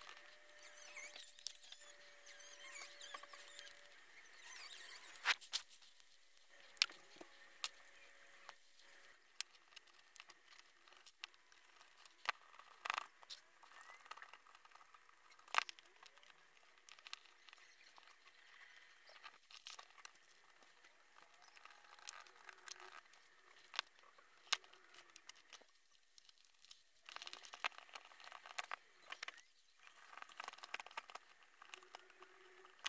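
Scattered light clicks and taps of small plastic and metal RC buggy kit parts and a hex driver being handled while shock absorbers are fitted to the chassis. A faint steady whine comes and goes in the first nine seconds or so.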